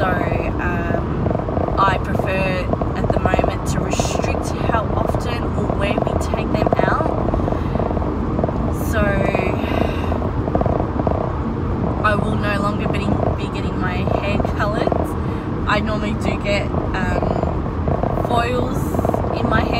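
A woman talking over the steady engine and road noise of a moving car, heard inside the cabin.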